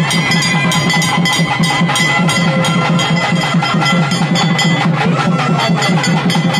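Drums playing fast, continuous, even strokes, with a few steady high tones held above them.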